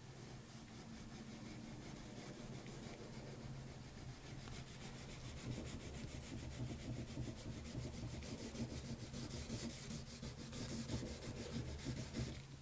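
Faint rubbing and scratching of a pencil-like drawing stick as it scribbles small looping marks into wet cold wax and oil paint on a rigid panel, growing busier about four seconds in. A steady low hum runs underneath.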